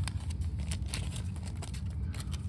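Clear plastic wrap crinkling and crackling in irregular little clicks as it is peeled off a fingerboard deck, over a steady low rumble.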